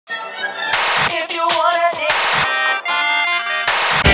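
Instrumental TV title music: sharp accented hits over pitched notes in the first two and a half seconds, then held chords, another hit just before the end.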